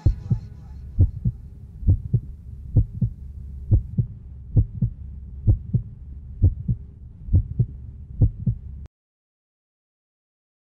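Heartbeat sound effect: paired low thumps, about one pair a second, over a low steady rumble and faint hum, cutting off suddenly near the end.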